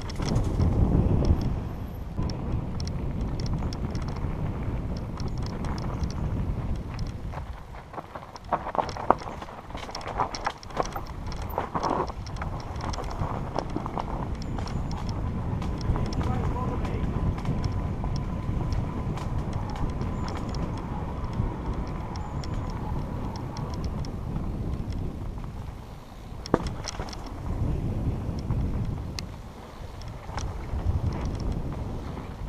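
Mountain bike riding over a rough dirt trail: steady rumble of wind on the microphone and tyres on the ground, with bursts of rattling and knocks over bumps. It is loudest in the first couple of seconds as the bike splashes through a muddy puddle.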